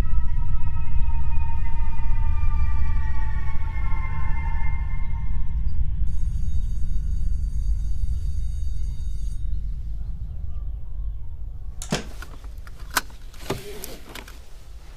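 Film score: a low rumbling drone under sustained, slowly falling eerie tones, with a thin high tone in the middle. It fades gradually, and near the end come a few sharp clicks and knocks, as of a car door or seat being handled.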